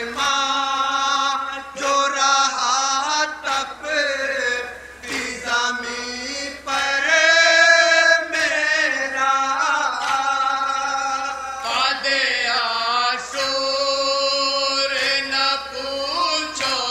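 Men chanting an Urdu nauha, a sung mourning lament, into a microphone, with several voices carrying the melody in long, held lines.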